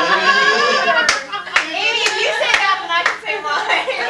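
Hand claps, about five in an even rhythm of roughly two a second, starting about a second in, over people's voices.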